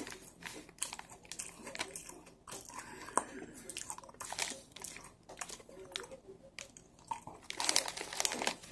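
Close-up eating sounds: an Oreo chocolate sandwich cookie being bitten and chewed with crunching, mixed with repeated crinkling of a foil-lined plastic cookie wrapper being handled.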